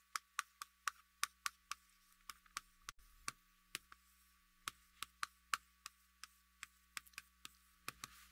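Chalk clicking against a blackboard as characters are written: a faint, irregular run of short sharp ticks, a few each second.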